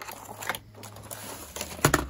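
A cardboard model-train box and its clear plastic sleeve being handled and opened: rustling with small taps, and one sharp knock or click just before the end.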